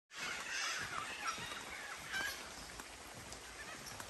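Birds calling: a few short calls that rise and fall in pitch, mostly in the first half, fainter after, over a steady background hiss.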